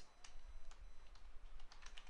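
Computer keyboard typing: a few faint, irregularly spaced keystrokes.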